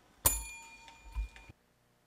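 Chrome desk call bell struck once by the chair, ringing and fading, to signal the close of the hearing. A soft thump follows about a second in, then the sound cuts off abruptly.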